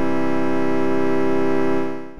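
A Padshop 2 granular synthesizer patch built on the Multipulse sample plays one held note, its two grain streams spread to different playback positions in the sample. The note holds steady and begins to fade out near the end.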